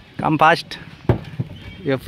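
A man's brief wordless vocal sound, followed by a couple of sharp knocks of footsteps on a wooden boardwalk.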